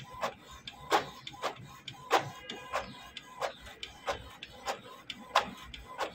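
Canon PIXMA TS5340 inkjet printer printing a two-sided job. Its mechanism clicks and clacks at uneven intervals, about twice a second, as a sheet feeds through and out.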